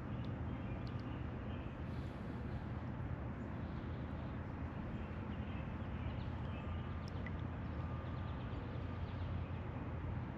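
Steady low rumble of distant road traffic, with a few faint high chirps now and then.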